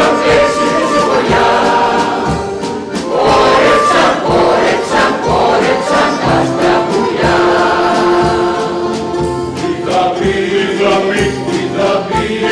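Mixed choir of men and women singing together, with several voices on different notes and long held notes in the middle.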